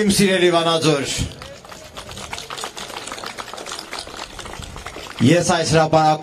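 Scattered hand-clapping from a crowd for about four seconds, between a man's speech over a microphone at the start and near the end.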